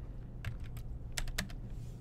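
Keys tapped on a computer keyboard: about four separate keystrokes in the first second and a half, over a low steady hum.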